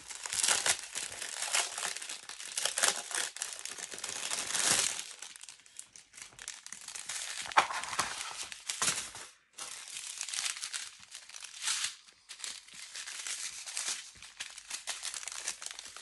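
Clear plastic packaging crinkling and crackling as a diamond painting kit's wrapping is opened and its plastic bead packets are pulled out. The crackle is densest in the first few seconds, then comes in shorter bursts with brief pauses.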